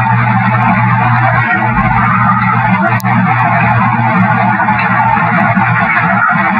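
A loud, filtered recording of a steady hiss, strongest in the middle range, over a constant low hum, with one brief click about halfway through. The uploader believes it is an unacknowledged signal being aimed at them.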